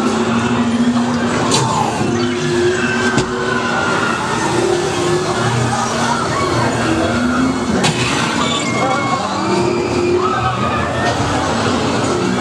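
Loud, busy haunted-maze soundscape: voices that cannot be made out, mixed over a continuous effects soundtrack, with sharp knocks about one and a half, three and eight seconds in.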